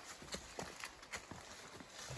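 Footsteps of hikers climbing a dry, leaf-strewn dirt and rock trail: soft, irregular crunches and scuffs, a few a second.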